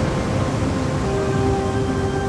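Cartoon rocket-thruster sound effect: a steady rushing rumble. Soft sustained music notes come in about a second in.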